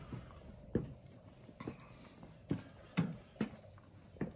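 Footsteps climbing weathered wooden stair treads on a steel tower: about five dull thuds at uneven spacing. Underneath is a steady, high-pitched chirring of insects such as crickets.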